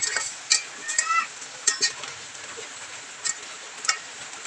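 A metal slotted spatula scraping and knocking against a pan as chicken pieces are stirred, in irregular strokes over a steady sizzle of frying.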